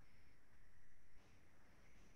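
Near silence: faint room tone and steady hiss from a video-call microphone.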